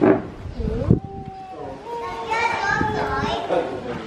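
Voices of children and adults talking and calling out in the background, with no clear words.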